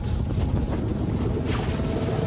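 Deep, steady rumble of storm wind, with a brief rushing swell of noise about one and a half seconds in.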